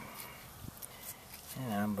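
Quiet knife work on a plastic cutting board as fat is trimmed from a cut of lamb, with a few faint clicks about a second in. A man starts talking near the end.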